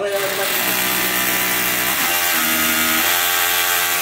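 Cordless hammer drill boring into a wall, running steadily under load, with its motor tone shifting slightly about halfway through.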